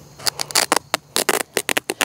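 Sharp pocket knife slicing across geotextile fabric, a quick, irregular run of short crisp snicks as the blade chews through the fibres.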